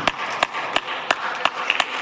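Hands clapping in a steady rhythm, about three sharp claps a second.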